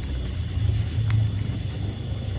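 Outboard jet boat motor idling: a low, steady rumble that swells slightly midway, with one faint click about a second in.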